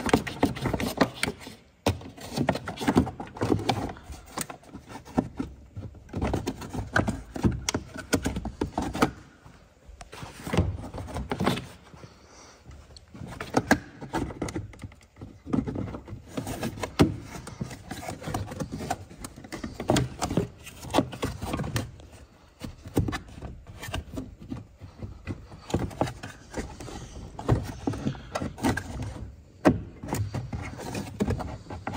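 Plastic scuttle panel below the windscreen being handled and pressed into its channel and clips: an irregular run of knocks, clicks and scrapes of hard plastic trim.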